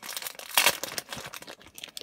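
Clear plastic bag around a stack of trading cards crinkling as it is handled, a dense run of irregular crackles with a louder burst about half a second in.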